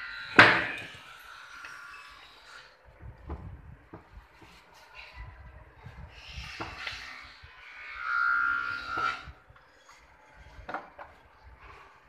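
Carved wooden mandir parts being handled during assembly: a sharp wooden knock about half a second in, then scattered lighter taps and clatter, with a louder scraping sound of about a second near the end.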